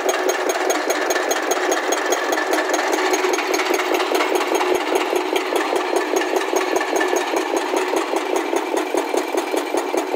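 Hydraulic breaker on a Hyundai crawler excavator hammering rock in a fast, steady pounding of about six or seven blows a second, with the excavator's diesel engine running under it.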